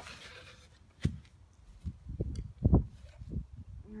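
Knocks and thumps from a wooden ramp board being moved and set up: a sharp knock about a second in, then several dull thumps, the loudest about three-quarters of the way through.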